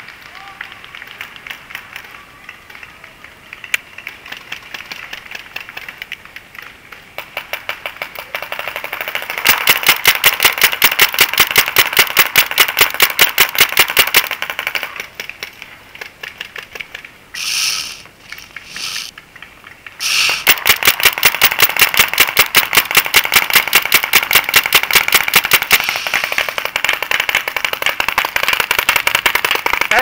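Paintball markers firing rapid strings of evenly spaced shots, several a second. The shooting grows louder about ten seconds in, breaks off for a few seconds with two short hisses, and resumes.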